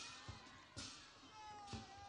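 Faint knocks and rustling on a handheld microphone as a shawl is pulled off the person holding it, with faint gliding whine-like tones underneath.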